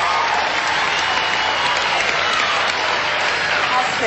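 Studio audience applauding steadily as three $1,000 T's are revealed on the puzzle board.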